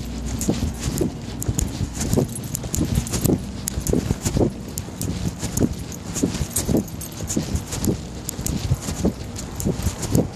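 Irregular soft knocks and rubbing, at times about two a second, over a low rumble: handling noise from the recording device being moved about with its lens covered.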